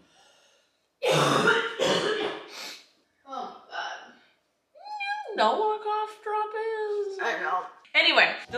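A person coughing and clearing their throat in a fit, then a woman's long, drawn-out "oh my god" held at one pitch.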